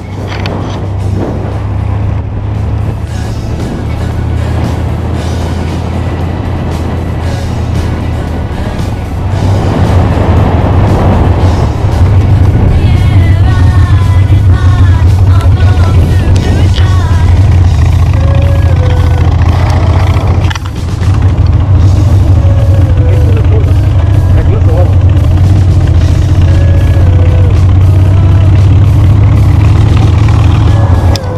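Motorcycle engine running with a steady low drone while riding, with music carrying a melody over it from about twelve seconds in.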